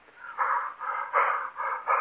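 Laughter in a quick run of short bursts, thin and muffled as on an old radio recording.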